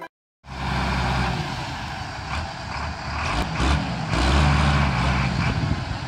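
Diesel farm tractor engines running steadily under load, starting about half a second in. The engine note grows louder around four seconds in.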